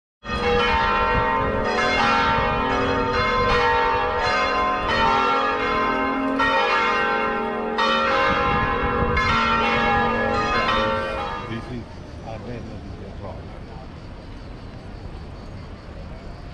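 Church bells ringing, several bells struck in quick succession so their long tones overlap. The ringing dies away about twelve seconds in, leaving low background noise.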